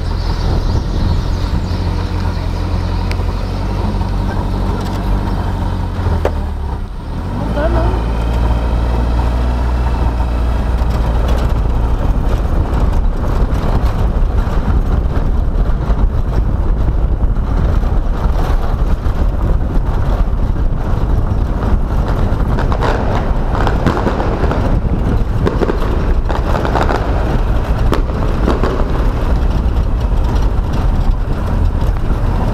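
Car driving, heard from a camera mounted on its hood: engine and road noise with heavy wind rumble on the microphone. About seven seconds in the sound dips briefly, then the engine pitch rises as the car pulls away again.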